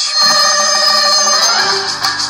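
Radio station jingle leading into the news: a held, bright chord of several steady tones that shifts about one and a half seconds in, then gives way to rhythmic music.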